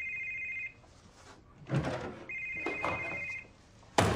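Mobile phone ringing with a trilling electronic ring: two rings, each about a second long, with a brief noise between them.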